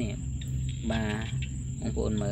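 Steady high-pitched drone of insects, one unbroken tone, over a low steady hum.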